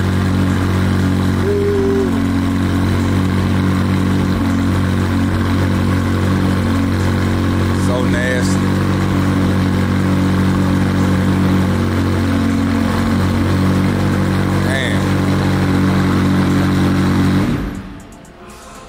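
McLaren Senna's twin-turbo V8 idling steadily after start-up, a deep, even running sound. It cuts off near the end.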